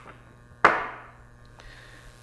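A single sharp knock as a small metal planetary gearmotor is set down on a wooden workbench, dying away over about half a second.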